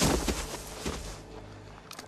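A sudden loud crash, followed by a couple of lighter knocks that fade away within about a second, over a low steady rumble.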